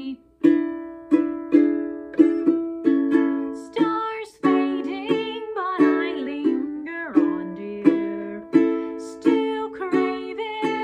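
Ukulele strummed in steady chord strokes about every half second to two-thirds of a second, each ringing out between strokes. A woman's singing voice comes in over it partway through with a held, wavering line.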